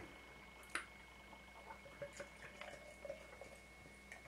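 Beer being poured from a glass bottle into a tilted glass, very faint: a light tick a little under a second in, then soft gurgles and drips.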